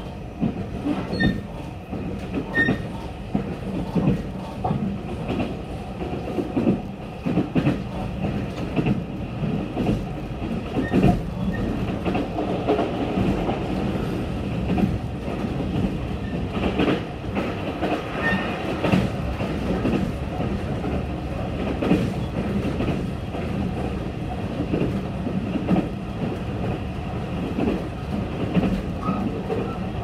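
Inside an electric train running at speed: a steady rumble of wheels on the rails, with repeated clicks as the wheels pass over rail joints.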